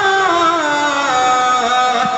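Male voice singing a devotional ghazal through a microphone and loudspeakers, drawing out one long melismatic note that slides downward and then holds steady.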